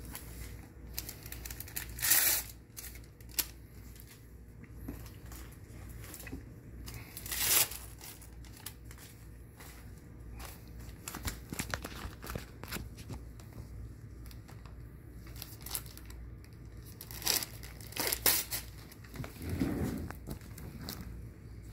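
Wound-dressing supplies being handled: packaging and gauze crinkling and tearing in short bursts over scattered small rustles and clicks. The loudest bursts come about two seconds in, around the middle, and near the end.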